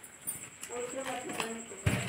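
A person's voice talking softly, not in clear words, then a single sharp knock near the end.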